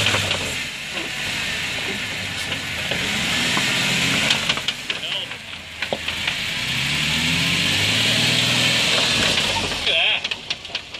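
Jeep Wrangler Rubicon engine pulling at low revs, rising and falling twice as the tires crawl over plastic traction boards bridging a rut, over a steady hiss. Scattered clicks and crunches of gravel and the boards come in the middle.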